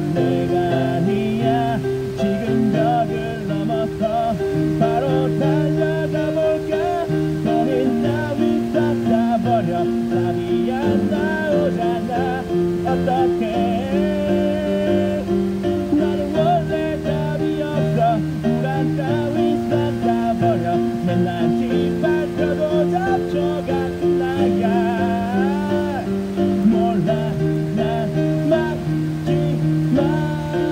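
A man singing a song through a microphone and amplifier over an instrumental accompaniment with held, strummed chords, the music running without a break.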